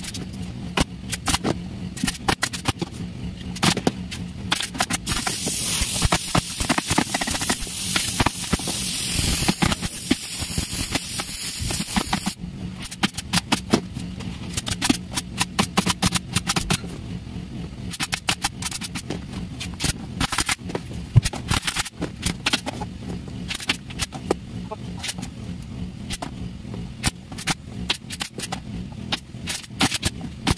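Pneumatic upholstery staple gun firing staples in quick, irregular bursts of sharp clicks as leatherette is stapled onto an office chair's wooden shell. A stretch of hissing about five seconds in, over a steady low hum.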